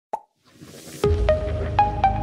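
Logo intro sting: a short pop, a swelling whoosh, then about a second in music starts with a deep bass and a run of short bright notes climbing in pitch.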